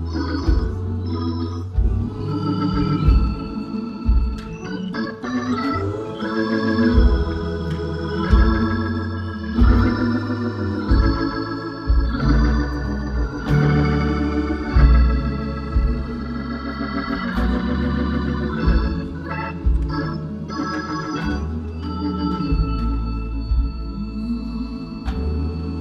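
Two-manual organ playing a gospel worship song: sustained chords with wavering held notes over a deep bass line.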